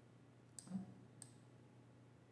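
Near silence with two faint computer input clicks about half a second apart, made while an annotation is being drawn on a shared screen.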